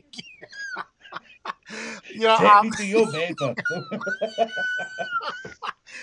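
Men laughing and exclaiming over a video call. In the second half a thin, steady high-pitched whine is held for about a second and a half, then bends down and stops.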